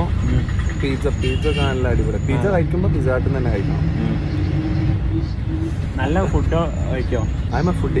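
Steady low rumble of a moving bus's engine and road noise, heard from inside the passenger cabin.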